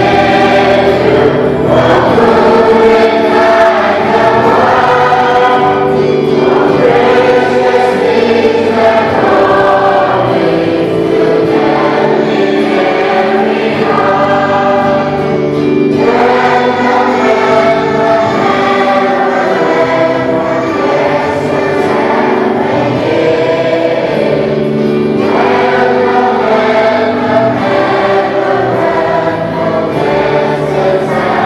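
A congregation singing a hymn together, many voices in long phrases with brief breaks between them.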